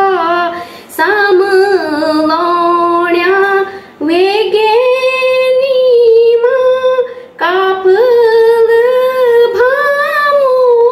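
A woman singing a Garhwali khuded geet, a folk song of longing for the maternal home, unaccompanied. She sings long held, wavering notes, with short breaths about a second, four seconds and seven seconds in.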